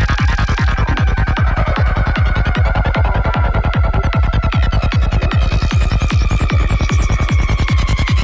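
Dark psytrance with a fast, driving low kick-and-bass pulse, about four beats a second, under a high synth line that glides slowly down in pitch.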